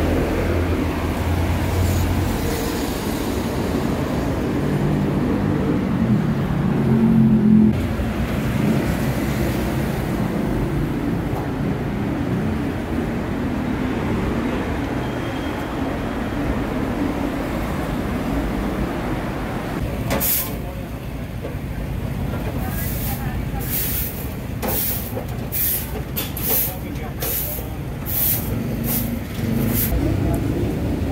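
Night city street ambience: steady traffic rumble with people's voices in the background. In the last third comes a run of short, sharp sounds, closer together toward the end.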